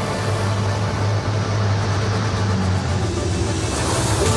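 Soundtrack music over a steady low hum from the Volocopter's electric rotors as the multicopter flies.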